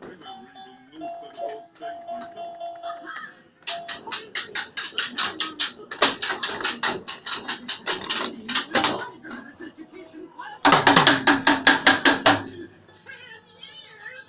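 A small plastic drum kit being beaten by a child in quick, even runs of strikes, about five a second, with a louder, faster flurry near the end.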